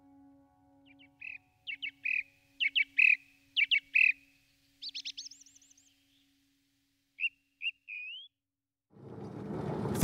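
A small songbird singing short phrases of sharp whistled notes, with a quick rising trill about halfway through and an upward-gliding note near the end, over the dying last note of soft music. About a second before the end, the rumble of a car driving begins to fade in.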